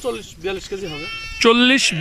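A garol sheep bleats once, briefly, about a second in.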